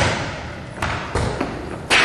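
A few dull thuds: a sudden one at the start, more about a second in, and another near the end, each trailing off quickly.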